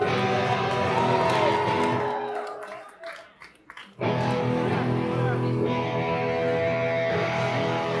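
Punk rock band playing live with electric guitar. A loud chord rings out and dies away over about two seconds, leaving a near-silent gap with a few knocks. About four seconds in, the full band comes back in loudly and keeps playing.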